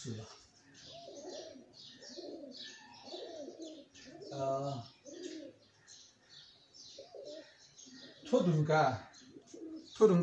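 Pigeons cooing, short low calls repeated every second or so, with small birds chirping high over them.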